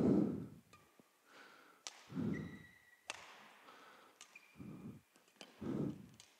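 Badminton rally: players' feet thudding on the court floor, a few sharp racket hits on the shuttlecock, and brief squeaks of court shoes.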